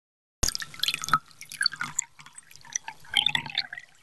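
Water drops falling irregularly into water, a scattered patter of drips that starts about half a second in.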